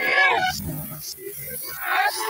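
A person's loud shout in the first half second, followed by low rumbling and a steady high hiss from party snow spray and sparklers, with more shouting near the end.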